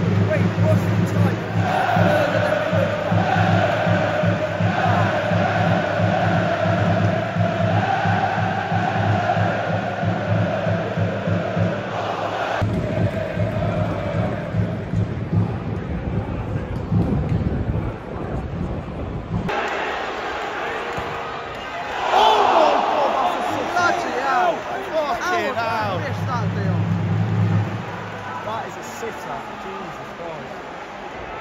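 Football stadium crowd singing and chanting in celebration of a goal. The sound breaks off abruptly about twelve seconds in, and the singing swells again near the end.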